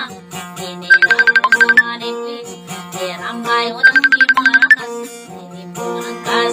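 Acoustic guitar music: a quick run of bright high plucked notes comes round about every three seconds over lower held notes.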